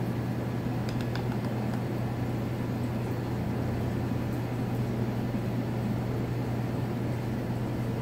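Aquarium filter pump running: a steady low hum under an even hiss, with a few faint ticks about a second in.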